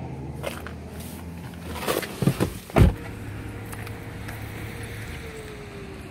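A car door shut with a single heavy thump about three seconds in, after a few lighter knocks as the person gets out. A low steady hum runs underneath.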